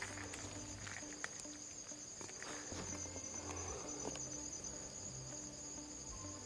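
Crickets trilling steadily: a faint, continuous high trill, with a faint low hum that comes and goes.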